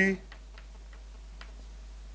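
Chalk tapping on a blackboard while writing: a few faint, short clicks over a steady low hum.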